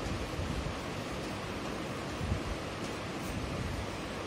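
Steady noisy hiss of room background, with a few faint scratches of chalk writing on a blackboard.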